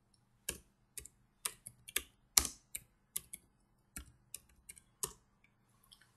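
Computer keyboard typing: a run of about seventeen separate, irregularly spaced keystrokes as a short command is typed into a command prompt and entered.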